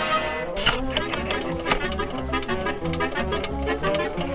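Dramatic orchestral cartoon score with brass and repeated low notes, broken by one sharp hit less than a second in.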